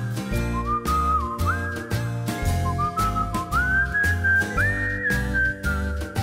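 Upbeat theme music with a whistle-like lead melody that slides up into held high notes, over a steady drum beat and pulsing bass.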